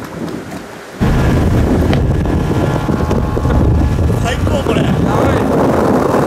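A bass boat running at speed, with heavy wind rumble on the microphone that cuts in abruptly about a second in and stays loud and steady.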